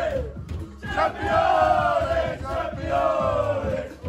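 A group of men chanting together in unison, a football victory chant. One phrase tails off just after the start, and after a brief gap a long loud phrase comes in about a second in, sliding down in pitch as it ends.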